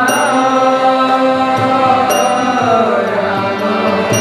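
Devotional kirtan: a sung mantra over a steady harmonium drone, with a ringing metallic cymbal strike about every two seconds.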